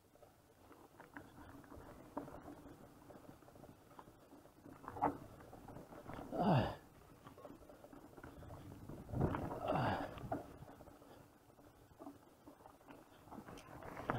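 Muffled rattling and knocking of an electric mountain bike riding over a rough dirt singletrack, picked up by an action camera. There are louder rushes about five, six and a half, and nine to ten seconds in.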